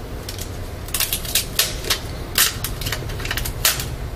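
An adhesive sticker being peeled off a laptop motherboard: a run of irregular sharp crackles and snaps, over a low steady hum.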